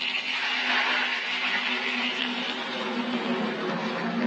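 Steaming hot liquid poured from a pot into a bowl of chilli oil, chilli flakes, chopped chillies, garlic and scallions, giving a steady hiss as it hits the oil and seasonings.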